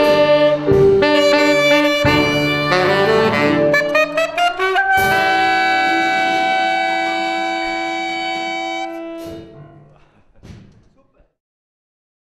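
Wind band playing with alto saxophones to the fore, several instruments moving through short notes, then sliding up into a long held chord about five seconds in. The chord grows quieter and dies away about ten seconds in.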